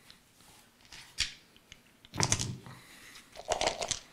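Twenty-sided dice being shaken and rolled onto a wooden table: a click about a second in, then two short clattering bursts. The roll is a spell check that comes up a fumble.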